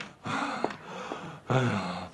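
A person's gasping, heavy breaths, with two louder breathy gasps about a third of a second and a second and a half in.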